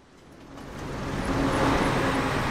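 A bus passing close by, its engine and tyre noise swelling to a peak over the second half.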